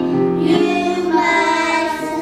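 A children's choir singing together, holding each note for about half a second before moving to the next.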